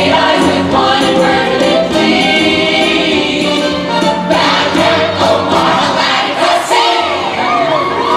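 Stage-musical ensemble number: a chorus singing over band accompaniment, loud and continuous.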